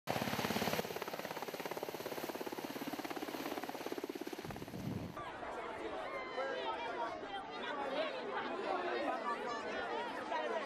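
Military helicopter taking off, its rotor blades beating fast and evenly under loud engine noise. About halfway through it cuts off sharply and a crowd of people talking takes over.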